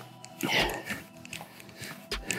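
A man breathing hard as he does mountain climbers, with one heavy exhale and a foot landing on the rubber mat about half a second in, and a few light scuffs after.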